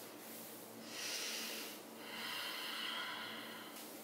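A woman breathing audibly and slowly while rolling her neck in a seated yoga stretch: a short breath about a second in, then a longer one from about two seconds in.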